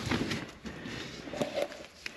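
Light handling noise: rustling and a few small clicks and knocks as hands work around the push-button start module under the dash; the engine is not running.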